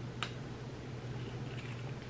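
A person biting into and chewing a small chocolate truffle: one small sharp click just after the start, then soft mouth sounds, over a steady low hum in the room.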